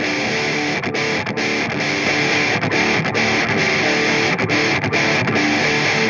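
Instrumental intro of a rock song: guitars playing a repeating riff, with no singing.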